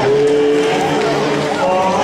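A male singer's voice through a handheld microphone and sound system, holding one long note for about a second, then going on with shorter notes.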